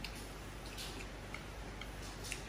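Close-miked eating of Samyang instant noodles: slurping in the last strands, then chewing, with several soft, wet mouth clicks and smacks.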